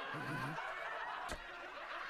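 Quiet snickering laughter, with one brief click a little past halfway.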